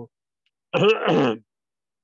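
A man clears his throat once, briefly, a little under a second in.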